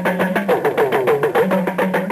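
Hausa kalangu hourglass talking drums playing a fast, steady rhythm, their pitch bending down and up between strokes, under a held low tone.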